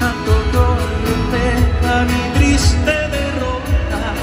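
Live band music: an electric bass and a drum kit keep a steady beat under a melody line.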